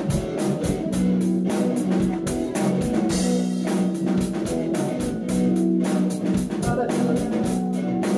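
Rock band playing live: electric guitars over a steady drum kit beat, an instrumental stretch with no singing.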